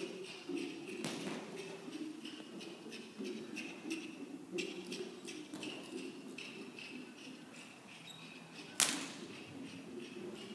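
A horse's hooves thudding on soft arena dirt as it trots and canters around, a steady run of dull beats. One sharp crack near the end stands out as the loudest sound.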